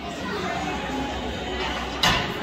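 Indistinct chatter of people talking in the background, with no single clear voice.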